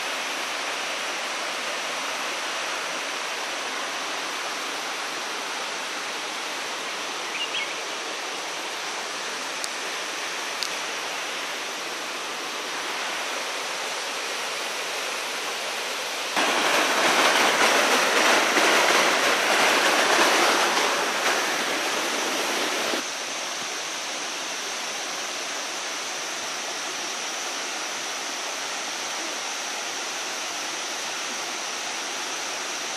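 Erawan waterfall's shallow cascades, water rushing steadily over rock. The rush swells much louder about halfway through for some six seconds, then drops back to its earlier level.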